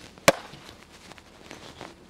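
A cork popping out of a bottle of prosecco: one sharp pop about a quarter second in, followed by a brief hiss of escaping gas.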